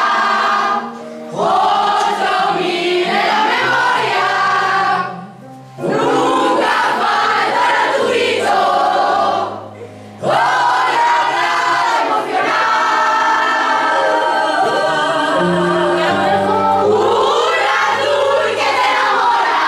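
Many women's voices singing a song together, choir-like, in long phrases with held notes, breaking off briefly three times.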